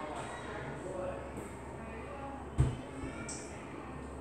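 Quiet room with a steady low hum and faint, soft speech, broken by one short low thump about two and a half seconds in.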